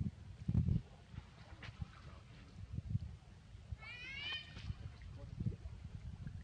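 A macaque gives a quick run of short, rising, squeaky calls about four seconds in, over irregular low rumbling bumps.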